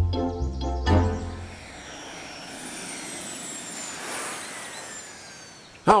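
Upbeat cartoon background music with a steady beat that stops about a second and a half in. It gives way to a softer airy whoosh with faint falling high tones that fades before a voice comes in at the very end.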